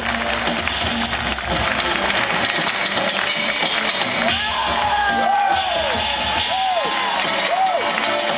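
Live band music filmed from within the audience, with crowd noise underneath. In the second half a melody line rises and falls in short arcs.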